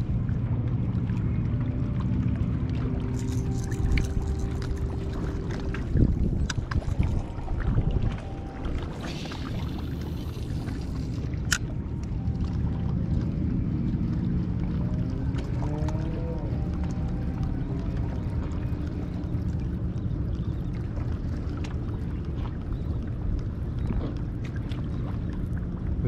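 Waterside ambience: a steady low rumble of wind and water, with a faint motor hum whose pitch rises briefly about halfway through, and a single sharp click.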